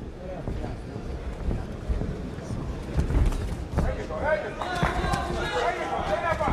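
Boxing-arena crowd noise, with a few dull thuds about three seconds in. Voices calling out grow louder from about four seconds in.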